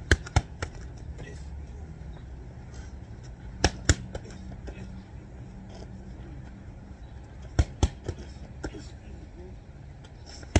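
Boxing gloves smacking handheld focus mitts in quick pairs of punches, three pairs a few seconds apart, with a couple of lighter hits after the last pair.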